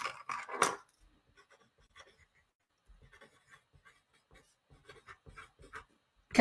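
Writing by hand on paper: short scratchy strokes, louder in the first second, then faint, scattered strokes.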